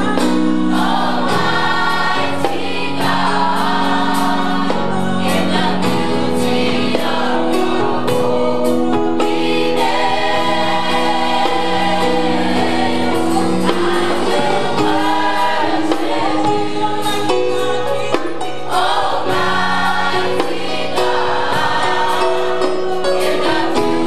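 Youth gospel choir singing a slow song in sustained harmony, with instrumental backing.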